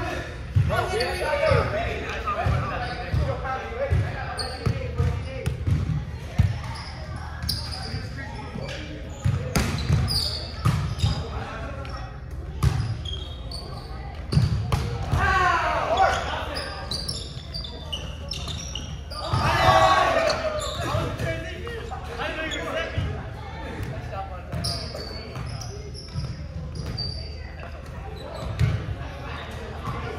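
Volleyball rally in a large gym: the ball is struck and bounces on the hardwood floor in a series of short thuds, while players call and shout to each other, loudest about fifteen and twenty seconds in. The hall echoes.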